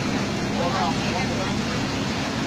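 Steady rain hiss with a low steady hum underneath; a voice is heard briefly about half a second in.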